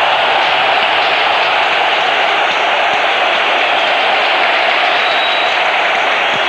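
Football stadium crowd cheering steadily as a goal is celebrated, heard through an old TV broadcast's narrow sound.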